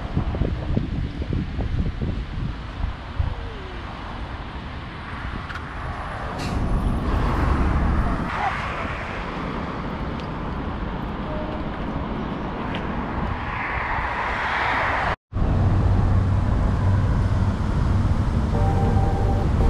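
Road traffic running past on a bridge, with wind buffeting the microphone. The sound drops out for an instant near the end and resumes as a steadier low hum.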